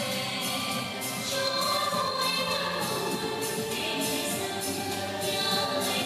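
A song plays with singing voices over a steady beat, accompanying a dance.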